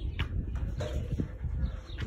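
Low rumble of wind on the phone microphone, with a few soft footsteps on dirt.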